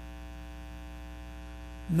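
Steady electrical mains hum with a buzz of evenly spaced overtones, unchanging in level.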